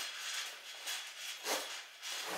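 Faint rubbing of a clutch bag's metal zipper being worked shut by hand, a zipper that tends to stick, with a slight swell about one and a half seconds in.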